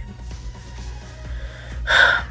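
A short, sharp intake of breath near the end, over soft background music.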